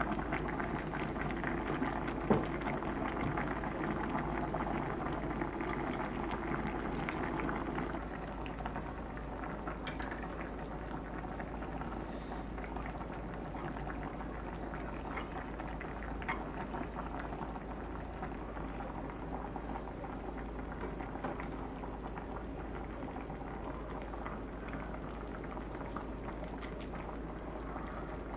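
Thick, spicy braised chicken stew bubbling and crackling in a pot as its sauce cooks down near the end of simmering. There is one brief knock about two seconds in, and the bubbling is a little quieter after about eight seconds.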